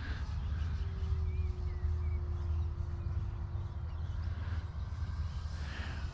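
A distant E-flite Cirrus SR22T electric RC plane in flight: its motor and propeller make a faint steady hum that sinks slightly in pitch as it passes, over a steady low rumble. A few faint chirps come near the middle.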